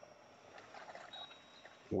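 Near silence: faint room tone, with a thin, steady high tone coming in about halfway through.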